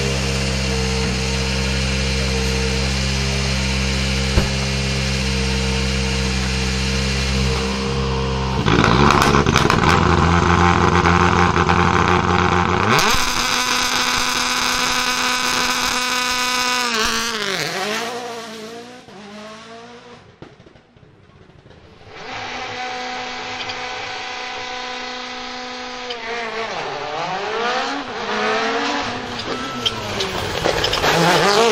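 Rally1 rally car's turbocharged engine idling, revved from about nine seconds in, then pulling away hard at about thirteen seconds with its note falling as it goes. After a few quieter seconds, another rally car approaches at speed and passes near the end, its engine note falling.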